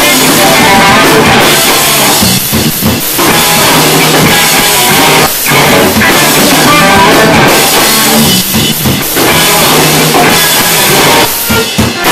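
Live rock band playing loudly: two electric guitars over a drum kit, with a few brief dips in the sound along the way.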